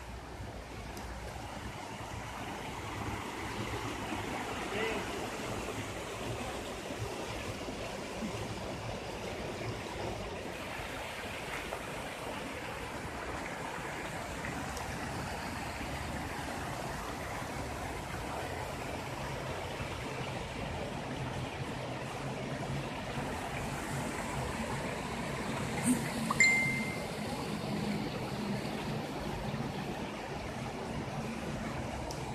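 Mountain creek running steadily over rocks and small cascades. A couple of sharp knocks stand out near the end.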